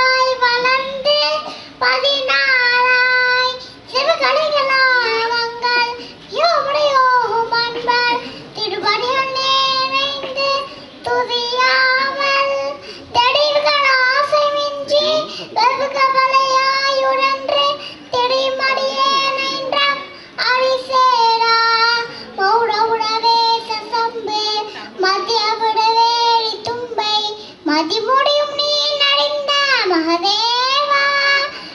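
Young children singing a song into handheld microphones, in held notes and short phrases with brief breaths between them.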